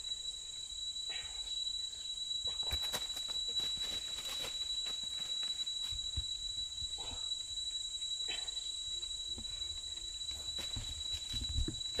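Steady high-pitched drone of insects in tropical forest, with scattered short rustles and knocks in the foreground.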